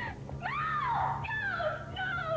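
A woman wailing in pain, one long drawn-out cry that begins about a third of a second in and slides down and up in pitch.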